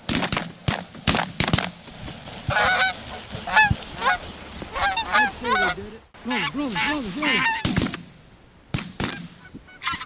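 A rapid volley of shotgun shots in the first couple of seconds, then Canada geese honking repeatedly, with a few more shots shortly before the end.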